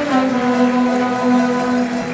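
A carnival bailinho band of saxophones, trumpets and guitars playing an instrumental passage between sung verses, with a long held low note through most of it.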